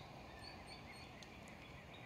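Faint outdoor background hush with scattered small bird chirps.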